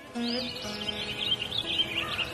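Birds chirping rapidly over the soft opening of a song's music, with a few held notes underneath.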